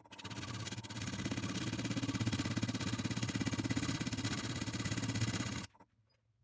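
Wood lathe running while a hand-held carbide turning tool cuts an off-center-mounted padauk disc: a fast, even rattle over a low hum. It starts sharply and cuts off abruptly near the end.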